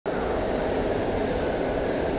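Steady, loud rumbling background noise of an underground station passageway, with no distinct events standing out.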